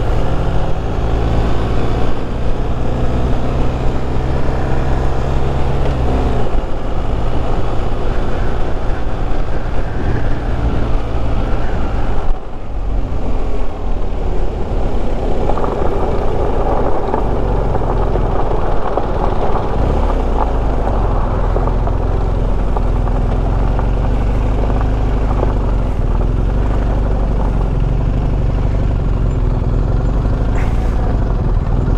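BMW motorcycle riding at road speed, engine running under steady wind noise on the microphone, with a brief dip as the throttle is rolled off. About halfway through it pulls onto a gravel shoulder, loose gravel crunching under the tyres, then slows to a steady idle.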